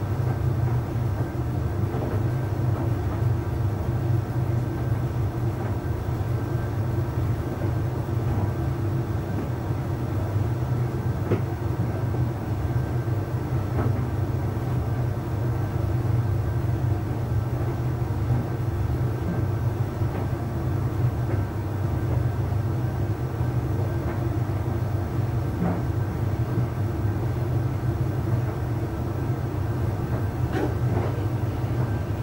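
Arçelik 3886KT heat-pump tumble dryer running mid-cycle: a steady low hum from its drum, fan and compressor, with a few faint taps from the tumbling laundry.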